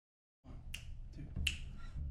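Finger snaps, two sharp snaps about three quarters of a second apart, counting off the tempo before a saxophone and double bass tune.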